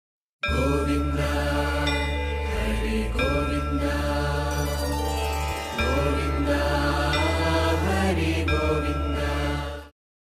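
Devotional music of a chanted mantra over a steady low drone. It starts about half a second in and cuts off just before the end.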